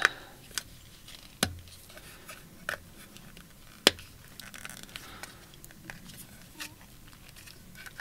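Plastic Naruto figure parts clicking and knocking as they are pushed and twisted together onto the figure's stand: a handful of sharp clicks, the loudest about a second and a half and four seconds in, with a few fainter ones later.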